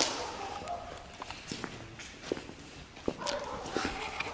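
Footsteps on a debris-strewn concrete floor: a scatter of irregular steps and scuffs.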